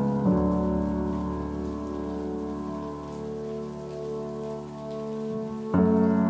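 Steady hiss of rain over soft piano music holding sustained chords, with a new, louder piano chord struck near the end.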